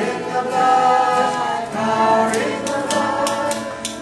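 A mixed group of voices singing together, accompanied by a strummed acoustic guitar whose strokes come through more clearly in the second half.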